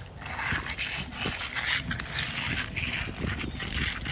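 Steel hand trowel scraping over a wet concrete overlay in repeated short strokes, about one stroke every half second or so, with low wind rumble on the microphone.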